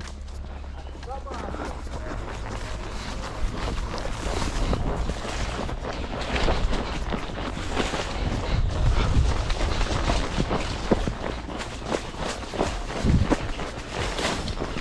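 A ridden horse moving over dirt and through scrub: irregular hoof knocks and brush scraping, with a steady low rumble of wind and movement on the horse-mounted microphone.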